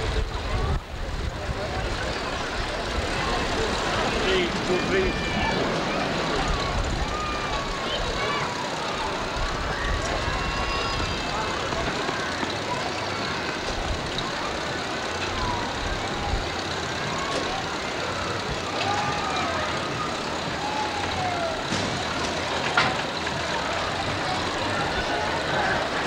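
Indistinct voices of a crowd, with some higher calls, over a low rumble that comes and goes.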